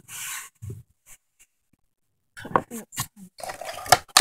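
Small rubbery plastic toy figures handled and set down on cardboard: short rustles and light clicks, busiest in the last second and a half, with a girl's brief "Oh" near the end.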